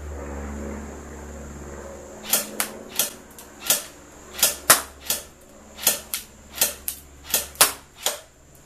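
Cyma CM.030 Glock G18C electric airsoft pistol firing single shots: about a dozen sharp cracks at uneven intervals of a third to two-thirds of a second, starting about two seconds in, with the battery nearly flat. A low hum fills the first two seconds.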